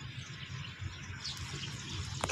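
Steady outdoor background noise: a low rumble under a hiss, with a faint short high chirp a little over a second in.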